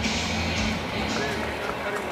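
Stadium background sound during a break in play: music playing with indistinct voices.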